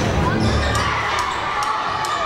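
Game sound from a basketball court: a ball bouncing on the hardwood floor over the chatter of the crowd in the bleachers.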